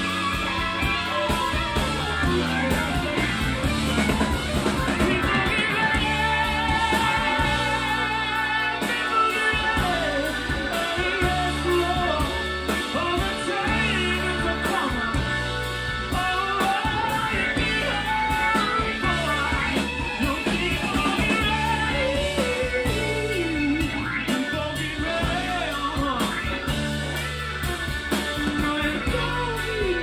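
A rock band playing live: electric guitars over a drum kit, with a steady low bass line changing notes every second or so.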